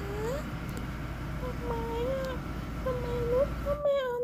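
Domestic tabby cat meowing, about four drawn-out meows, over a steady low rumble of a car engine running that cuts off near the end.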